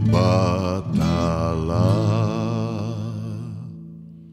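Music: a chant-like sung voice holding long, wavering notes over a sustained low tone, fading away near the end.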